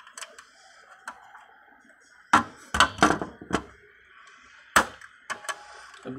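Sharp plastic clicks and small knocks as cable connectors are worked loose from the camera board inside a Toshiba e-Studio photocopier: about ten irregular clicks, with a cluster of the loudest a little over two to three and a half seconds in and another near five seconds.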